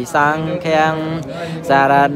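A single voice chanting Buddhist verses in long, drawn-out, melodic syllables, with short breaks between phrases.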